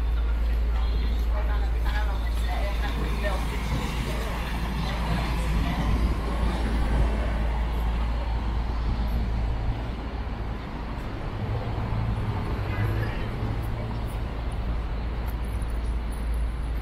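Busy city street: a constant deep traffic rumble, passers-by talking in the first half, and a vehicle's engine humming steadily for a few seconds in the second half.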